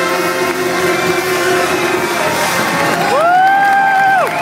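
A jazz big band's final held chord dying away, then the audience breaking into cheering and applause about three seconds in, with one loud held cry that rises in pitch, holds and falls away.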